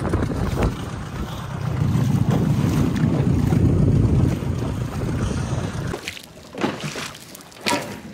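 Wind rumbling on the microphone over an inflatable dinghy on open water, dropping away sharply about six seconds in; two or three short knocks follow near the end.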